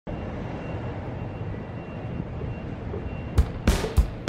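Steady low rumble of street and traffic noise. Near the end, music with sharp, evenly spaced drum beats cuts in.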